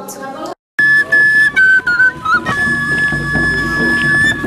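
Wooden folk pipe played in high, shrill notes: a few short stepped notes, then one long held note.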